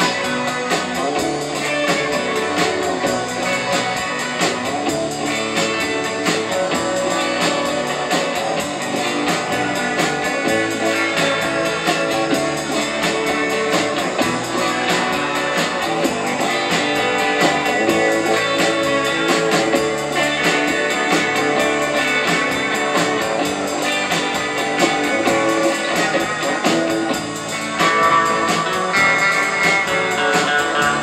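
A live rautalanka band playing an instrumental tune on electric guitars with bass guitar and drum kit, the lead guitar carrying the melody.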